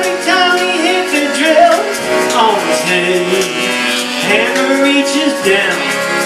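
Live folk-blues band playing at full tilt: guitar, accordion, upright bass and drums, with a melody line that slides and wavers in pitch over the chords.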